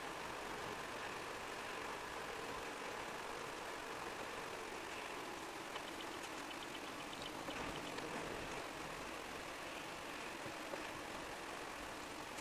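Road noise inside a moving car: tyres on a wet road and the engine running steadily as the car slows. A short run of light, evenly spaced ticks comes about halfway through.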